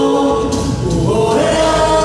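Male a cappella vocal group singing in harmony, several voices holding a chord, moving through a change of chord in the middle and settling on a new held chord near the end.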